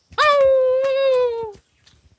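A person's long, high, held call, a "hoooo" about a second and a half long that drops in pitch as it ends. It closes a rhythmic chant of "ho" syllables.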